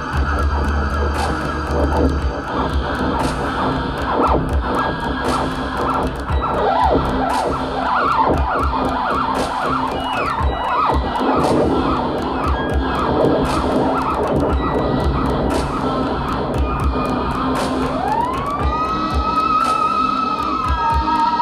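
Live electronic theremin music: a dense, wavering electronic texture over rapid clicking ticks, with a low drone that drops away about two seconds in. Near the end the theremin glides upward in pitch and holds a steady high note, much like a siren.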